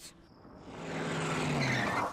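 Cartoon sound effect of a car approaching fast, its engine and tyre noise swelling over about a second and a half, then cut off suddenly near the end.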